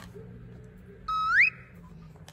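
A short whistle-like tone, about a second in, that slides upward and then holds briefly before cutting off suddenly.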